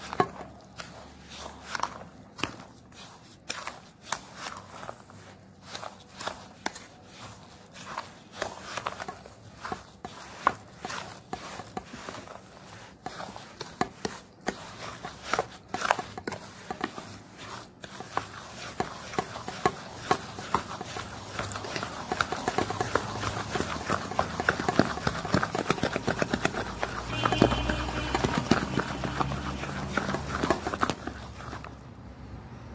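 A spoon stirring and scraping a moist semolina basbousa mixture in a stainless steel bowl, with irregular knocks and scrapes against the bowl's side. About halfway through, the strokes become quicker, denser and louder.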